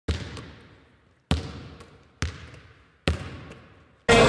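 A basketball bounced four times at an uneven, dribbling pace. Each bounce is a sharp thud that trails off in a long echo.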